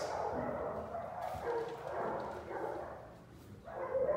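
A dog vocalising with short pitched calls through the first two and a half seconds, growing fainter near the end.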